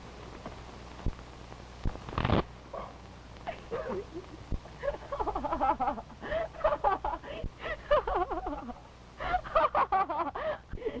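A woman laughing in long, rapid high peals from about five seconds in, loudest near the end. It is preceded by one short sharp sound about two seconds in, over the steady low hum of an old film soundtrack.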